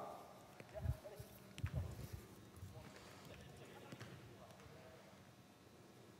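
Faint, scattered low thumps from a soccer drill on indoor artificial turf: running footsteps and ball touches. A few come in the first three seconds, and a couple more are fainter still, around four seconds in.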